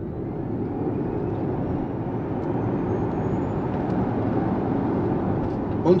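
Inside the cabin of a dual-motor Hyundai IONIQ 5 accelerating hard from a standstill: tyre and road noise builds steadily louder, with a faint high electric-motor whine rising in pitch.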